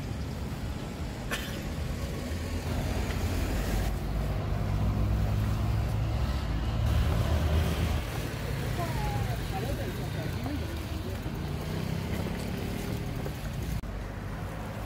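City street traffic: a low rumble of vehicles, with one passing close by and louder through the middle.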